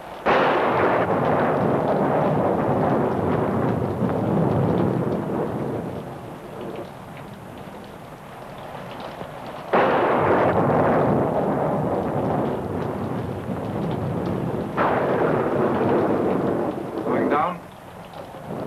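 Thunder in a rainstorm: three claps, one just after the start, one about ten seconds in and one about fifteen seconds in, each rolling away over several seconds. Rain runs steadily underneath.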